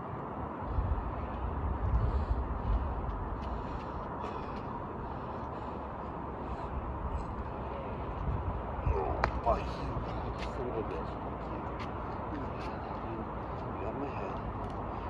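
Distant, unintelligible children's voices over steady outdoor background noise, with a low rumble in the first few seconds and a few high calls about nine seconds in.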